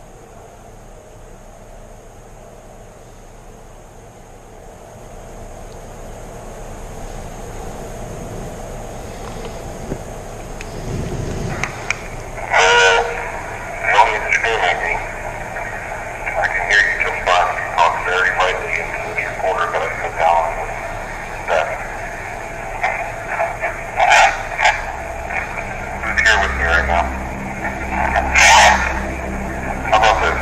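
Indistinct, unintelligible voices, faint at first and louder from about twelve seconds in. A low hum starts near the end.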